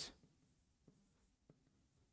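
Faint ticks of a stylus tapping on an interactive display screen while writing, twice, about a second in and again about half a second later, in near silence.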